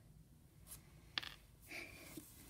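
Faint handling sounds from a plastic action figure: light rubbing, and a small sharp click a little over a second in.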